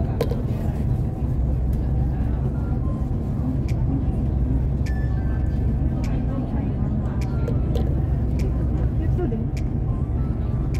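Steady low road rumble inside a moving vehicle cruising at speed on a highway, with a few small clicks and rattles from the cabin.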